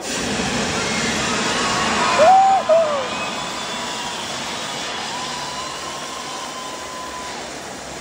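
Confetti cannons firing with a sudden rushing hiss that slowly fades, over a cheering crowd. About two seconds in, someone lets out a loud two-part whoop.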